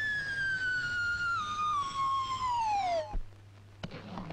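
Comedy sound effect: a long whistle-like tone sliding steadily down in pitch, cutting off about three seconds in. A short click follows near the end.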